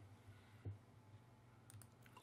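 Near silence with a single faint click about two-thirds of a second in, a computer mouse button being clicked, and a couple of fainter ticks near the end.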